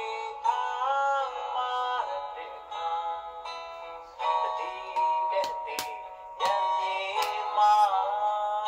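A Myanmar pop song playing: a high sung melody in bending, phrase-by-phrase lines, with a few sharp percussive clicks in the second half.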